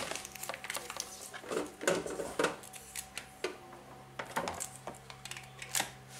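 Scattered clicks, knocks and plastic clatter of power plugs and cables being handled and fitted, with a faint steady hum underneath.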